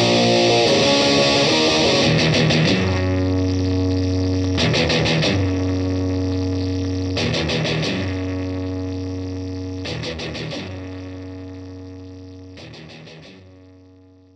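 Electric guitar (an Eastwood Hi Flier Phase IV) distorted through a Boss DS-1 pedal, playing a riff. A busy passage comes first, then held low chords struck about every two and a half seconds. They ring out and fade away near the end.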